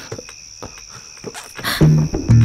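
Crickets chirring steadily at a high pitch, with a few soft rustles and clicks; low musical notes come in near the end.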